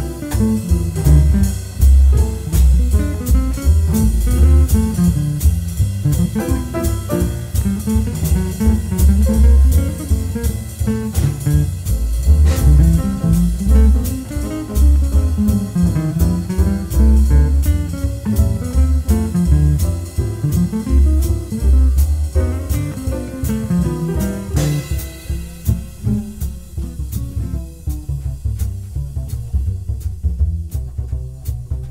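Small jazz group playing: a hollow-body archtop guitar carries the line over upright bass and a drum kit keeping a steady cymbal beat. Near the end the cymbal strokes thin out, leaving guitar and bass.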